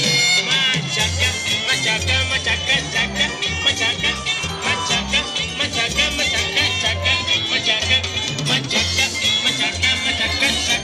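Upbeat Latin dance music played loud over outdoor loudspeakers: an instrumental stretch with a steady bass beat and bright melody lines, no singing.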